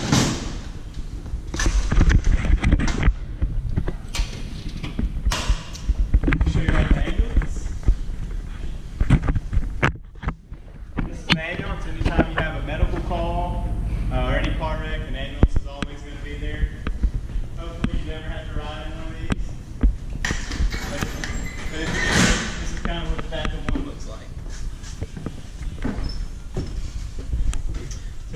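Knocks and thumps from a fire engine's metal diamond-plate bumper compartment lid being handled, with voices talking in the middle part.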